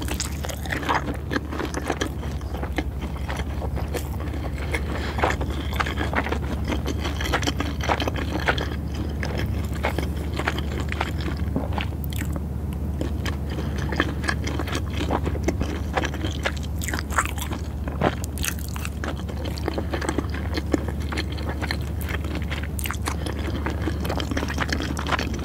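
Close-miked chewing of a mouthful of nigiri sushi, with many short, irregular wet mouth clicks and smacks over a steady low hum.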